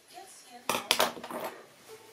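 Steel hair-cutting scissors snipping hair, a few sharp metallic snips in quick succession around the middle.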